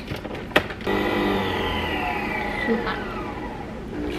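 Nespresso Vertuo capsule coffee machine: a few clicks as the lid is pressed shut, then about a second in the machine starts brewing with a steady motor hum, one tone gliding down in pitch over the next two seconds.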